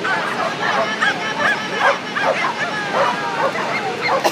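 A dog barking and yipping repeatedly in short high-pitched barks, two or three a second, without pause.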